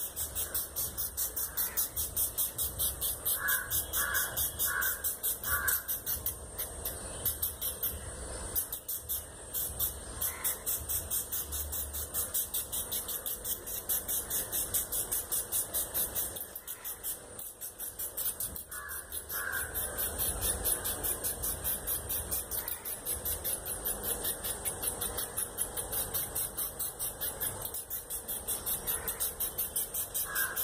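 Crows cawing in short runs of about four calls, heard a few times, over a fast, even, high-pitched ticking that carries on throughout.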